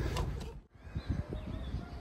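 Faint bird calls over low rumble and knocks on the microphone, broken by a brief dropout less than a second in.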